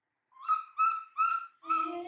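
Baby macaque calling: four short, high coos in quick succession, about three a second, starting a moment in. A lower voice comes in near the end.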